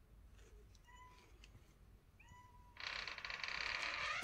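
Belgian Malinois puppy giving two short, high-pitched whines a little over a second apart. Near the end comes a louder rustling, scuffling noise.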